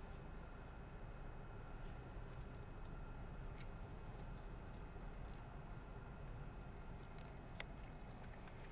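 Low, steady in-cabin hum of a 2005 Honda Civic's 1.7-litre four-cylinder engine as the car moves off slowly, with a couple of faint clicks.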